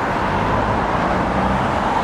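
Steady road traffic noise from cars passing on a multi-lane road, picked up by a camera's built-in microphone.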